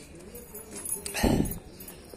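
A dog whining faintly in a thin, wavering tone, followed a little past the middle by a short, louder, rougher sound.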